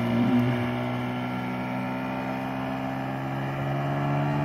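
Outboard motor running at a steady speed, one even engine tone, as the fishing boat pulls away across the water.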